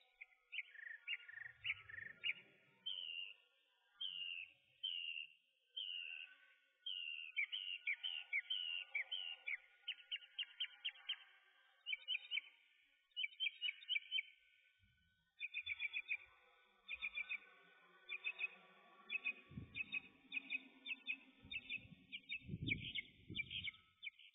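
Small birds chirping: quick runs of short, high, downward-sliding notes repeated over and over, faint. A few low thuds come near the end.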